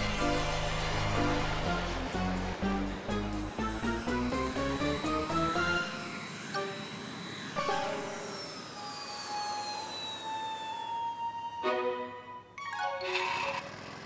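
Cartoon background music: an upbeat score with a steady bass beat for about the first six seconds, then lighter scattered notes and a long descending whistle.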